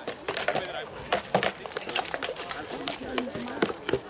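Rattan swords striking shields and plate armour in quick, irregular blows during armoured combat, with spectators talking in the background.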